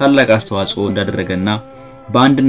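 A man's voice speaking, breaking off about a second and a half in.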